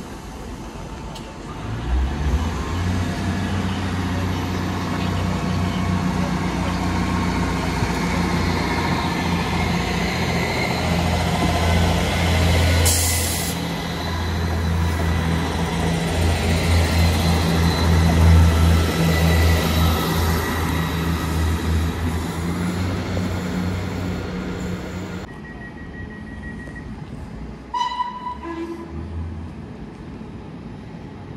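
Northern Class 158 diesel multiple unit running along the platform, its diesel engine a steady low drone that grows louder about two seconds in, with a brief hiss about halfway through. Near the end the engine sound stops abruptly, leaving quieter station background with a short tone.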